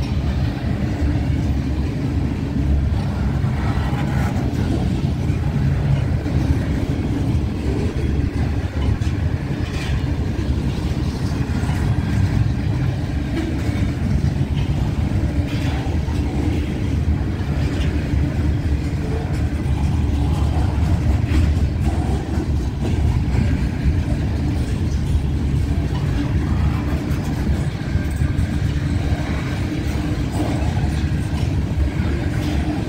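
Freight train of Herzog ballast cars rolling past close by: a steady low rumble of steel wheels on rail, with scattered clicks and clanks throughout.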